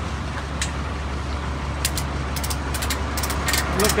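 Engine idling close by with a steady low hum, with a run of short, light clicks and taps starting about two seconds in.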